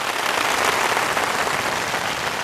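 A large audience applauding, a steady, dense wash of clapping.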